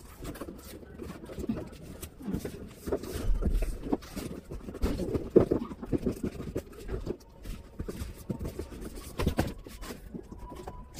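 Cardboard shipping box being opened and handled by hand: flaps scraping and bending, with irregular rustles and knocks, the sharpest knock about five seconds in.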